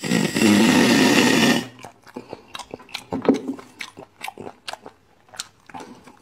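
A loud slurp lasting about a second and a half as marrow is sucked out of a braised beef bone, followed by chewing with scattered wet mouth clicks.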